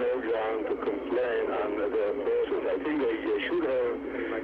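A man speaking English in an old archival interview recording, the voice thin and narrow like old film or radio sound.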